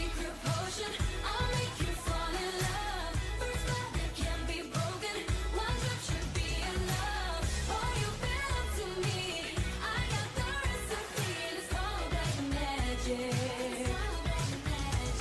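Bollywood-style song with a singing voice over a steady, bass-heavy beat.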